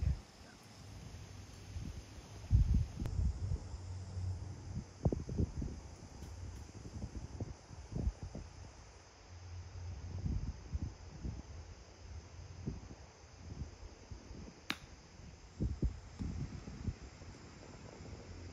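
Wind buffeting the microphone in uneven gusts, with one sharp click about three-quarters of the way through: a golf club striking the ball on a short chip shot from the rough.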